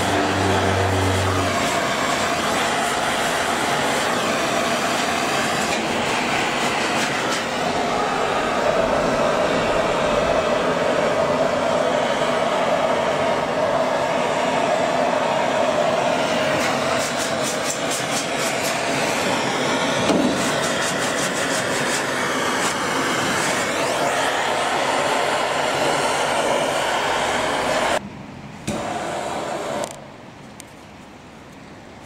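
Gas blowtorch flame burning with a steady hiss as it heats lead body solder on a car body seam during lead loading. The sound drops away suddenly near the end.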